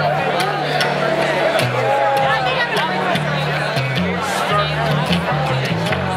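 Upright bass playing a solo line of low notes, some held for about a second, as the lead-in to a song. Audience chatter runs over it.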